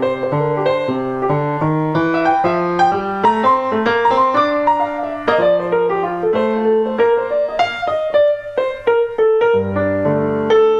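Acoustic grand piano played in a jazz style in an unbroken stream of notes. The left hand repeats a set melodic line while the right hand improvises freely over it.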